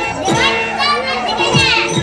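Children's voices calling out over music that has a steady drone and two low drum beats.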